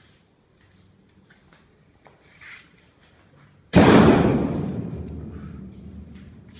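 A sudden, very loud outburst from a young male lion close behind the cage bars, about two-thirds of the way in, fading away over a couple of seconds.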